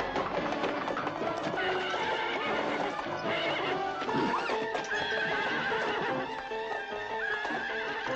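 A horse neighing once about four seconds in, with hooves clip-clopping, over film score music.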